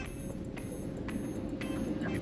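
Low road rumble inside the cabin of a Fiat 500e electric car moving slowly, with no engine noise and a faint steady hum over it.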